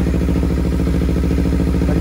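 Kawasaki Z300's parallel-twin engine idling steadily, warmed up after running for a long while.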